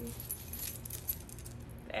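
A necklace's chain and charms jingling lightly and unevenly as gloved fingers untangle it, over a low steady hum.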